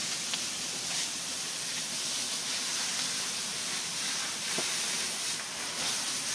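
Steady high hiss of water spraying from a garden hose.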